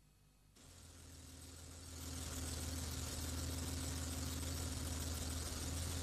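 Petrol engine with Bosch K-Jetronic continuous fuel injection, warmed up and running steadily at idle. The engine sound comes in about half a second in, builds for a second or so, then holds steady.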